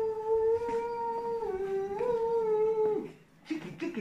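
A person's long, howl-like vocal call held at one steady pitch. It drops a step about halfway through, rises back and stops abruptly about three seconds in.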